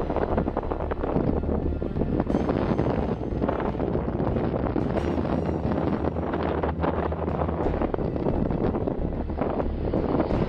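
Wind buffeting the microphone outdoors: a steady rushing noise with heavy low rumble.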